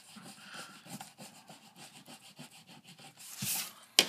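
Pencil scratching on paper in many short, faint, irregular strokes as a knife blade outline is drawn. A brief louder rustle of the paper comes near the end.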